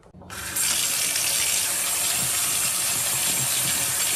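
Kitchen faucet running steadily into a sink while tomatoes are rinsed by hand under the stream. The water starts about a third of a second in.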